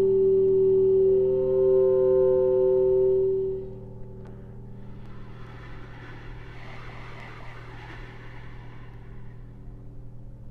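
A B-flat clarinet holds a long, soft, steady note. About a second in, a second, higher tone sounds with it, and both stop after about three and a half seconds. A quiet airy hiss then swells and fades away.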